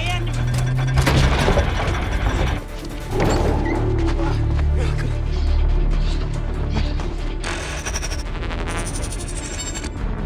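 Film sound design of giant robots in battle: dense mechanical clattering and ratcheting over a heavy low rumble, with music underneath.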